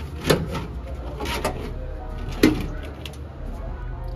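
Steel side plates being broken loose from a Honda CRX's rear tube frame: two sharp metal bangs about two seconds apart, with lighter knocks and scrapes between them, over a steady low hum.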